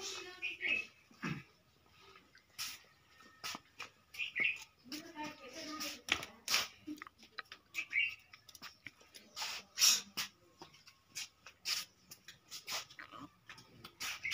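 Low, indistinct voices in the background, with frequent short clicks and taps and a few brief high squeaks.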